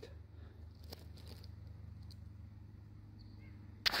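Steady low electrical hum from the high-current test rig while it pushes about 81 amps through a receptacle, with a couple of faint ticks about a second in.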